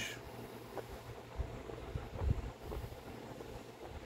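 Quiet room background with a steady low rumble and a few soft low bumps, the clearest a bit over two seconds in, typical of a phone being handled close to the microphone.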